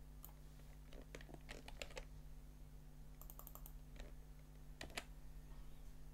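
Faint clicks of a computer keyboard and mouse: scattered single key presses, with a quick run of several about three seconds in. A steady low hum sits underneath.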